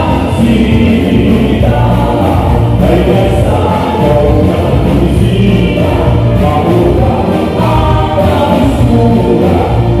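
Live band playing kuratsa dance music: a melody over a strong, steady bass line.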